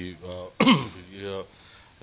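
A man's voice into a handheld microphone, broken about half a second in by one loud, short throat clearing, followed by a little more speech and a brief pause.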